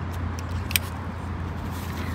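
Steady low outdoor rumble, with a couple of faint, sharp clicks about halfway through.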